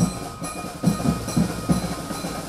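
Drums beaten in a quick, uneven rhythm, several strikes a second, with metallic ringing above them.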